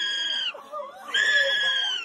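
A person shrieking twice in long, high-pitched, steadily held screams. The first cuts off about half a second in, and the second starts just after a second in. Quieter voices come between them.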